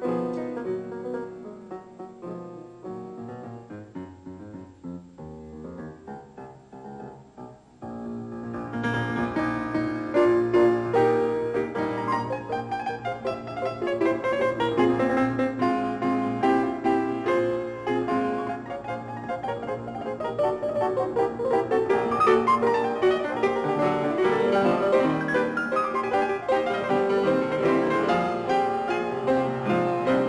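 Grand piano music played by several pianists at once. It opens with a quiet, sparse passage, and about eight seconds in it becomes much louder and fuller, with many notes sounding together.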